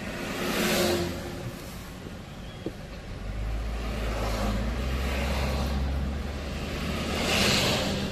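Car heard from inside the cabin pulling away from a standstill: a low engine and road rumble comes up about three seconds in and holds as it gathers speed. Passing traffic swells by and fades three times.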